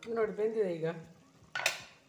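A metal lid is lifted off a cooking pan of frying drumsticks, giving one short, sharp scraping hiss about one and a half seconds in. A brief spoken sound comes before it in the first second.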